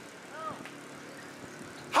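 A pause in amplified speech: faint, steady outdoor background noise with a low hum, and a brief faint pitched sound about half a second in.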